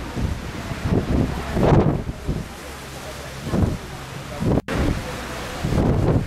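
Wind gusting over the microphone, a low buffeting rumble that swells and falls, with indistinct voices in the background. About three-quarters of the way through, the sound cuts out for an instant.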